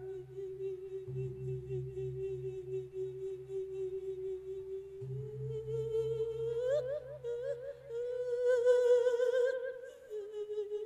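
A monk's voice sustaining a long, wordless sung note in the Isan lae sermon style through a microphone. The note holds steady for about five seconds, then climbs and wavers in ornamented turns near the end. A faint low pulsing of about four beats a second runs beneath it.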